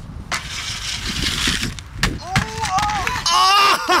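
Inline skates grinding along a metal stair handrail, a hissing scrape lasting about a second and a half. It is followed by a single sharp knock about two seconds in as the skater bonks off the ledge. Onlookers then whoop and shout, loudest near the end.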